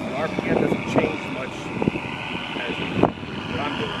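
Radio-controlled P-51 Mustang model flying past overhead, a steady drone from its propeller and onboard engine-sound module.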